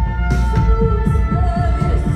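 Live band music played loud: a bowed violin and sustained keyboard tones over a heavy bass with a few drum hits, and a woman's voice singing a couple of held, wavering notes.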